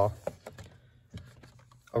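A handful of light, scattered clicks and taps from plastic Blu-ray cases being handled on a shelf.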